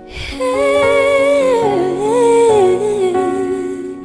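A female pop singer singing one long phrase that slides up and down in pitch, over sustained keyboard chords in a slow love ballad.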